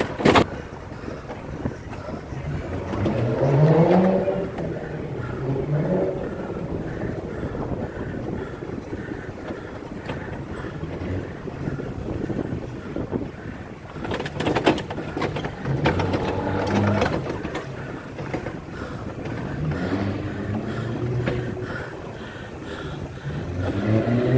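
Car engines accelerating in traffic, their pitch rising in sweeps several times (a few seconds in, in the middle and near the end), over steady road and wind noise.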